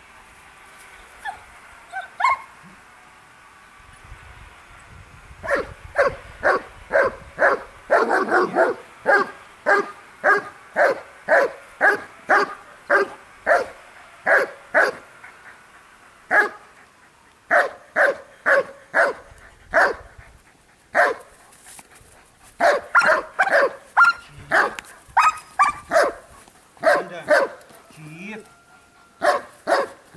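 German shepherds barking repeatedly, about two barks a second. The barking starts about five seconds in and keeps going with only short pauses.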